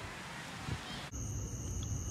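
A steady rushing noise that cuts off suddenly about a second in, giving way to crickets' steady high trill over a low hum.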